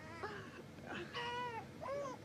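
An infant making soft, short vocal sounds: three faint coos or whimpers that rise and fall in pitch.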